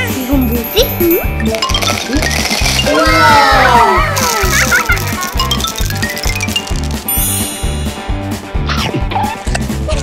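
Upbeat children's background music with a steady beat, overlaid with cartoon sound effects: a flurry of rising and falling pitch glides a few seconds in, and sparkly high chimes later on.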